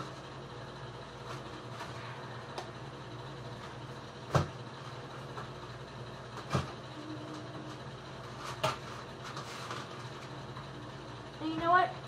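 A metal ice cream scoop knocking while scooping hard ice cream: three sharp knocks about two seconds apart, with a few fainter clicks, over a steady low hum.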